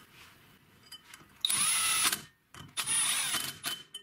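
Cordless drill-driver running in two short bursts of about a second each, a steady high whine, driving bolts into the flange of a car wheel hub.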